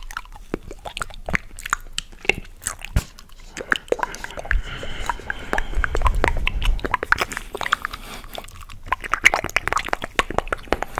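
Close-miked chewing and wet mouth sounds of eating a chocolate caramel and peanut ice cream bar: a dense, irregular run of small clicks and smacks, louder and fuller in the middle.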